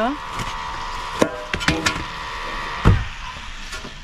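Thin metal baking trays knocking against a wooden table as hot sourdough loaves are tipped out of them: a few scattered knocks, the loudest thud nearly three seconds in.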